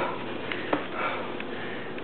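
A man breathing hard through the nose between exercises in a circuit workout, two loud breaths about a second apart, with a couple of short light clicks in between.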